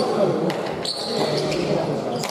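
Leather pelota ball smacking off bare hands and the court's wall and floor during a hand-pelota rally: a few sharp smacks echoing in the hall, over a murmur of voices.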